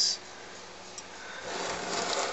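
Small engine being turned by hand on a wooden workbench: a rough scraping rub of metal on wood that starts about a second and a half in and grows louder.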